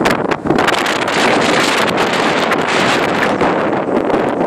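Loud, steady wind buffeting the microphone.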